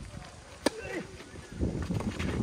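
Tennis racket striking the ball on a serve: a single sharp crack about two-thirds of a second in, followed near the end by a low rumbling noise.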